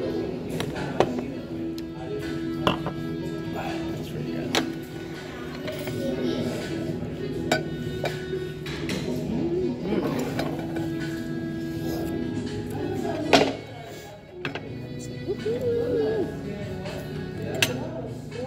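Background music with faint voices, broken by a few sharp clinks of glass and cutlery against dishes on the table; the loudest clink comes about two-thirds of the way through.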